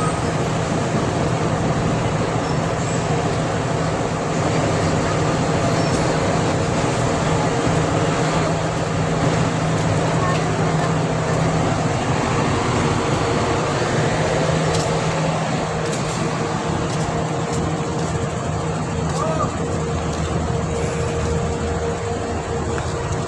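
Steady, dense street traffic noise with a low steady engine hum that fades out about three-quarters of the way through.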